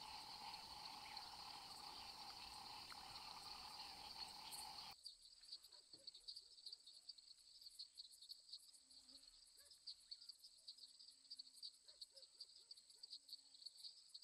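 Faint night-time wetland ambience of insects chirring. It is dense and steady at first, then after a sudden cut about five seconds in becomes sparser pulsing chirps with a few low animal calls.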